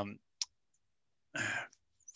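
A single short, sharp click about half a second in, then a brief breathy rush of noise a second later. Between them there is dead silence.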